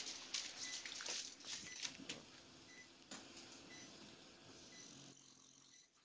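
Faint cath-lab room sound: soft, short, high beeps recurring through it, like a patient monitor, with a few small handling clicks near the start.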